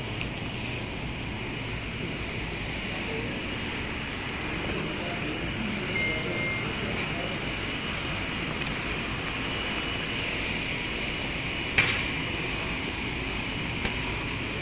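Steady background hum, with faint voices in the middle and a single sharp click near the end.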